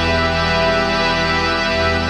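Reggae band music on a long held closing chord, keyboard sustaining steady notes over the bass, with one bass-note change late on.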